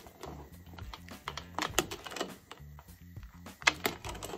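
A cooking utensil clicking against a stainless steel pot as miso soup is stirred, a string of sharp clicks with the sharpest near the end. Background music with a repeating bass line runs underneath.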